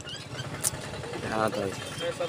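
A vehicle engine running nearby, a low steady rumble, with a single sharp click about two-thirds of a second in.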